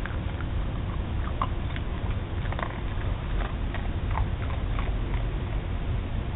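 Miniature schnauzer crunching a dog biscuit: scattered faint crisp crunches at irregular intervals over a steady low background noise.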